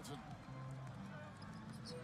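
NBA game broadcast audio played quietly: a commentator's voice at the start over steady arena crowd noise during a fast break.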